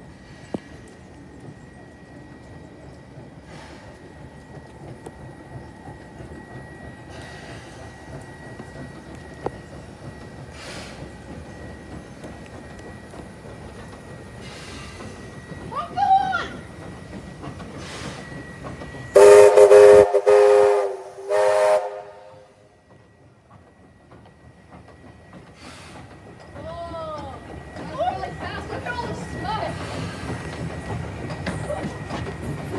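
Steam locomotive 2705 working toward the platform with a steady low rumble, then sounding its steam whistle loudly: one long blast of about two seconds and a shorter one just after, about two-thirds of the way through. Near the end the rumble grows again as the engine draws close.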